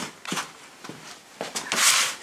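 A few light clicks and knocks of hands handling tools and parts at a motorcycle footpeg, then a short hiss near the end.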